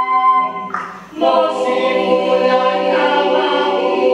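Mixed choir singing a cappella in held chords. About a second in, the chord breaks off with a short hissing consonant, then a new full chord enters and is sustained.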